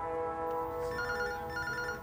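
A telephone ringing, one short electronic double ring about a second in, over soft sustained background music.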